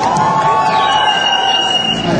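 Audience in a large sports hall cheering while a long held note sounds, bending up at the start, with a thin high steady tone joining about halfway through.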